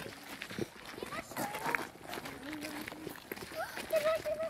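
Indistinct voices of people talking as they walk, with footsteps on a gravel path.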